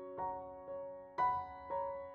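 Slow, gentle piano music, with a new note or chord struck about every half second and left to ring.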